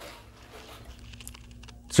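Faint handling sounds of a plastic Transformers Earthrise Megatron action figure being gripped and shifted on a hard display floor: a soft rustle with a few light plastic ticks in the second half.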